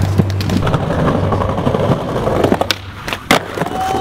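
Skateboard wheels rolling over pavement with sharp clacks and knocks of the board, and faint music in the first half.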